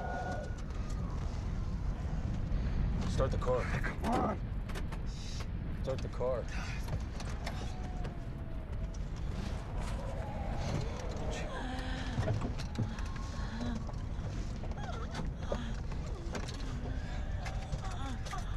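A vehicle's engine and cabin give a steady low rumble, heard from inside the cab. Short vocal cries and sounds come over it about three seconds in, around six seconds and again near the middle.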